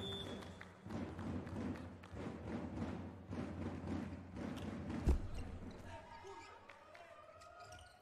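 Indoor volleyball arena: crowd noise, with one sharp ball strike about five seconds in as the volleyball is hit into play. After it the crowd sound drops, leaving a few faint held tones near the end.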